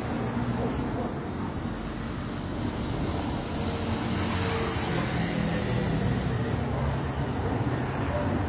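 Steady low rumble of distant road traffic, with no single event standing out.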